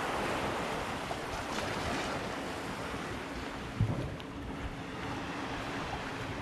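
Small waves washing on a sandy shore, with wind on the microphone. A brief low thump about two-thirds of the way through.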